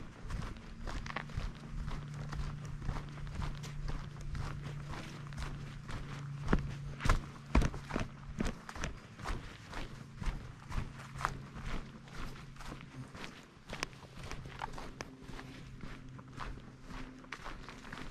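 Footsteps of a hiker walking at a steady pace on a dirt forest trail, boots crunching on soil and leaf litter, a few steps near the middle louder than the rest. A faint low steady hum runs under them for most of the time.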